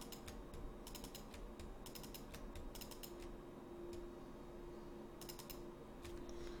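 Faint clicking of a computer mouse and keyboard, in about five short bursts of a few quick clicks each, with a faint steady hum coming in about halfway.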